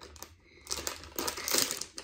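Crinkling and rustling of a toy's packaging being torn open by hand, in quick irregular crackles that start about half a second in.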